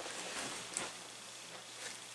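Faint handling noise of a cardboard broth carton being moved and set down, with a soft click a little under a second in, over quiet room tone.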